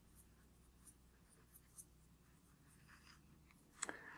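Faint, soft scratchy strokes of a dry fluffy brush dusting luster powder onto a hard chocolate ball.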